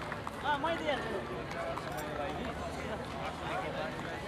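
Indistinct voices of several people talking in the background, quieter than the speech on either side.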